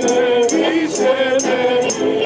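A group of men and women singing a song together to strummed acoustic guitar and a smaller, higher-pitched strummed guitar-like instrument, with crisp strums keeping a steady beat.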